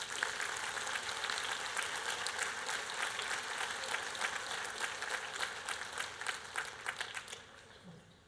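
Audience applauding, a dense patter of many hands that tails off and stops near the end.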